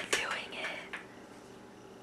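Faint whispered speech with a couple of light clicks in the first second, then quiet room tone.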